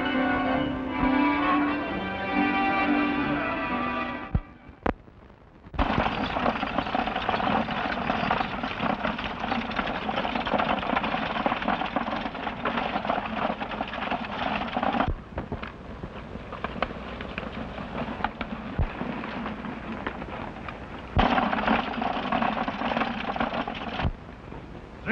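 Dance music plays for the first few seconds and stops suddenly. After a short gap comes a dense, steady clatter of galloping horses' hooves and a rolling stagecoach. It drops in level about fifteen seconds in and rises again a few seconds before the end.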